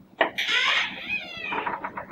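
A wooden door clicks about a fifth of a second in, then its hinges creak for about a second as it swings open.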